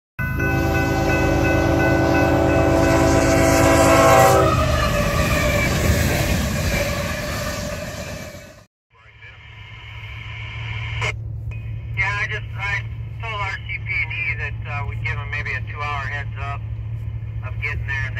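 A locomotive's Nathan K3L five-chime air horn sounds one long chord for about four seconds, followed by the rumble of the train fading away. After a sudden cut, a steady low hum inside a car, with voices coming over a radio.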